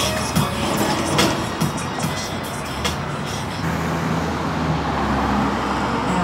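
A motor vehicle passing on the street, a steady low rumble, over background music with scattered clicks.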